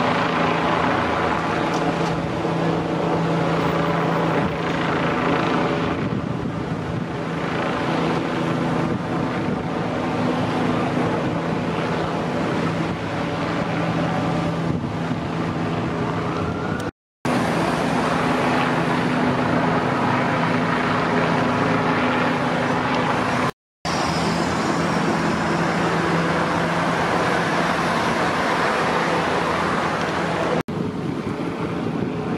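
Street traffic: a steady low engine drone with the wash of cars going by, broken by two brief dropouts where the footage is cut.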